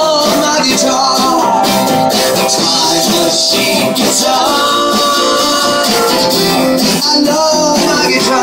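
Live music led by a strummed acoustic guitar, with a singing voice over it.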